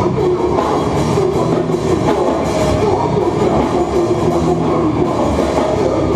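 Live hardcore band playing loudly and without a break: guitars, bass and a drum kit.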